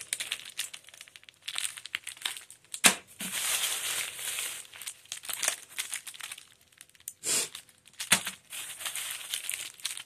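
Plastic wrapping on firecracker packs and a plastic shopping bag crinkling and rustling as the packs are handled. Several sharp clicks are mixed in, the loudest about three seconds in.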